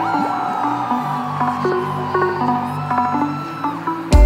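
Live electronic music in a beatless passage: synthesizer chords held under one long synth tone that sweeps up at the start, then slowly falls and cuts off just before the end.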